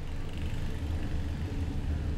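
A steady low rumble, fading in and growing louder, with a faint hiss above it.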